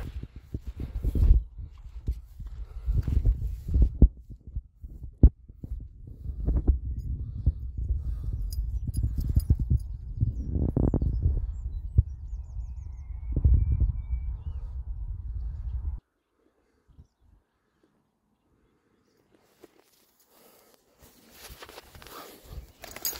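Low rumbling with irregular thumps from wind buffeting the phone's microphone, with a few faint bird chirps. About two-thirds of the way through it cuts off suddenly to near silence.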